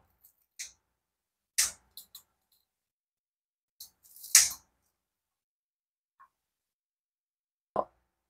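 Kitchen scissors snipping through fried pempek fishcake held in metal tongs: several separate cuts with quiet between them, the loudest about four and a half seconds in. A short dull knock near the end.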